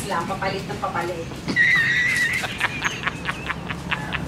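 Brief voices in the first second, then a high wavering squeal near the middle, and a rapid run of evenly spaced clicks, about six a second, through the rest.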